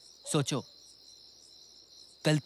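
Crickets chirping in a steady, high, unbroken trill. A man's voice says a brief two-syllable word about a third of a second in.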